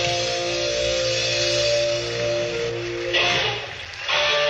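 Live rock band led by electric guitar playing sustained notes. About three seconds in there is a sudden loud burst that dies away within a second, and then the band plays on.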